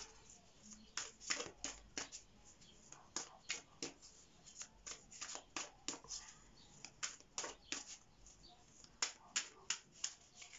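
A deck of tarot cards being shuffled by hand, the cards slapping and flicking against each other in a faint, irregular run of short clicks.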